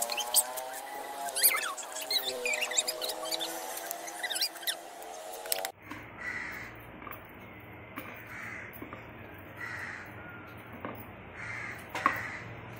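Coconut husk fibres torn off by hand with crackling and clicking over a held, slowly falling tone, then a knife cutting coconut flesh on a plate with a few sharp clicks. A short call repeats about once a second in the background.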